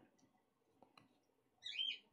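Faint clicks of a bottle being handled about a second in, then a short high-pitched squeak near the end.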